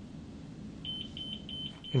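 Manual defibrillator-monitor giving its start-up beeps as it is switched on: about four short, even, high beeps at roughly three a second, starting just under a second in.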